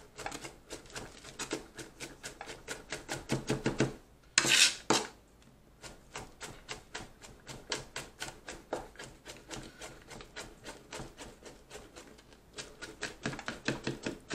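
Knife blade rocking through minced garlic on a plastic cutting board: rapid, even taps, several a second, with a brief louder scrape about four and a half seconds in.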